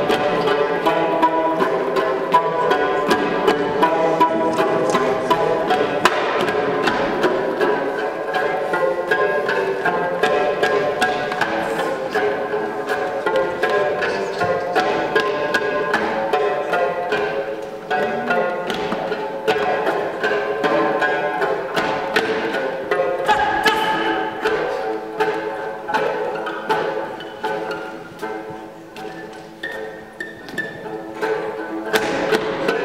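Dranyen, the Tibetan plucked lute, played in a quick rhythmic dance tune with many rapid plucked notes. It grows quieter toward the end.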